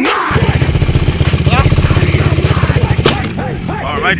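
Quad bike (ATV) engine running with a rapid, even pulse, which fades about three seconds in; voices are faintly mixed over it.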